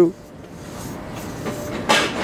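Forklift running, a low steady mechanical noise that builds slightly, with a single sharp clunk near the end.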